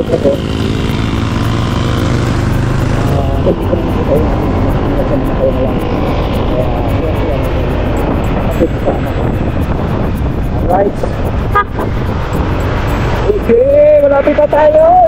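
Steady wind rush and engine noise from a moving motorcycle, heard from a camera mounted on the bike. Faint indistinct voice sounds lie under it, and a louder voice with a wavering pitch comes in near the end.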